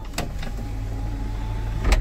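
The turbo-diesel engine of a 1999 Hyundai Mighty II truck idles, heard from inside the cab as a steady low rumble. There is a sharp click shortly after the start and another near the end.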